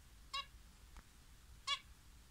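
Two short, high chirping calls from a small cage bird, about a second and a half apart, over quiet room noise.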